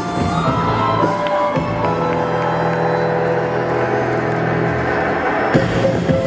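Music for a gymnastics routine playing through a sports hall's sound system, with long held notes and a new phrase entering sharply near the end, and crowd noise underneath.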